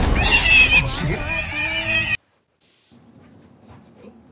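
A loud horse whinny, likely a dubbed-in sound effect, that cuts off abruptly a little over two seconds in. It is followed by faint room noise.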